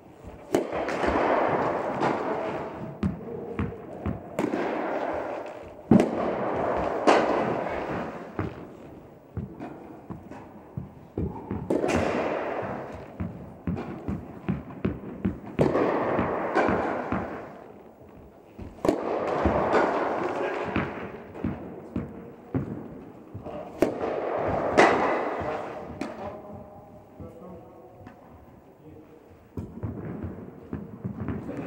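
Tennis rally in an indoor hall: sharp pops of a ball struck by rackets and bouncing on the court, coming every second or so with pauses between points, each echoing in the hall.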